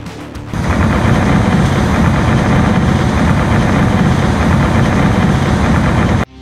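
Heavy tracked rock-cutting machine working. Its toothed cutting drum chews through rock in a dense, rapid clatter over a deep engine rumble, starting loudly about half a second in.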